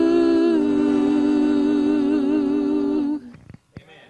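Two voices in harmony holding the last long note of a gospel song, with vibrato, stepping down in pitch twice near the start, then cutting off about three seconds in, leaving a quiet room with a few faint knocks.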